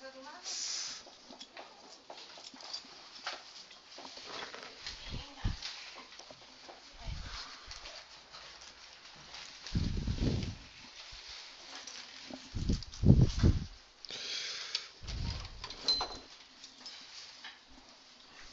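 Indistinct, muffled voices and movement in a small classroom, with scattered low thumps and a few short hissy bursts. No clear words.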